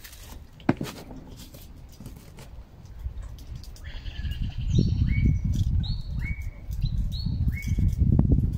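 A bird calling in short, clear notes, several times from about four seconds in, each note jumping up in pitch and then holding, over a low rumbling noise that grows louder through the second half.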